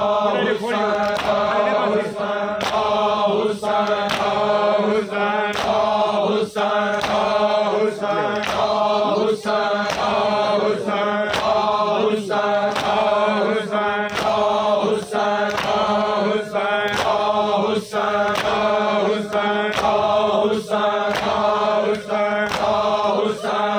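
A large group of men chanting a noha in unison, with rhythmic chest-beating (matam): open hands striking bare chests in time, about three strikes every two seconds, under the chanting.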